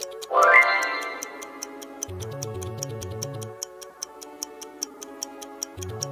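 A quiz countdown ticking sound effect, a steady fast clock-like tick, over background music. A loud rising sweep sound effect comes just after the start.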